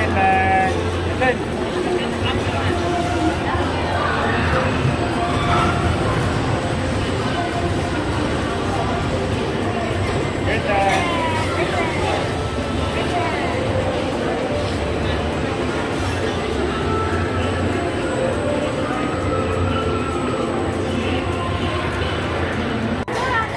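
Busy indoor amusement-park din: a steady low mechanical rumble of the rides under a mix of background voices and children's chatter.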